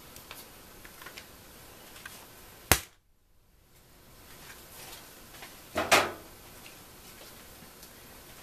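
Two sharp knocks about three seconds apart, the second with a short ring: a chocolate mold rapped on a hard work surface to release the tempered white chocolate shells.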